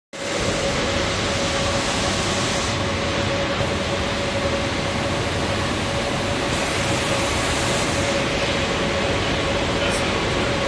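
Cabin noise inside a moving 81-775/776/777 metro car: steady rumbling running noise with a constant mid-pitched hum over it.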